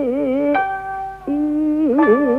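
Jiuta singing accompanied by plucked strings: a voice holds a long note with a wide, slow vibrato. About half a second in, a sharp plucked note sounds and the pitch shifts. Just after a second, a new lower note begins and bends down near the end.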